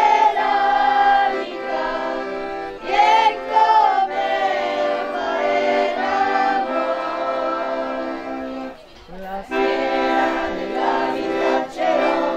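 Traditional folk song: accordion playing sustained chords while a group of voices sings. The music dips briefly about nine seconds in.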